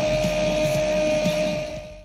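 Celebration noise with shouting, under one long, steady high tone that holds at a single pitch and fades out near the end.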